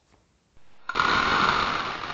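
A transition sound effect for a segment title card: a sudden loud rush of dense noise about a second in, slowly fading away.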